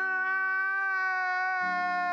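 A man's long, drawn-out wail held on one steady pitch, a meme sound clip of a man crying.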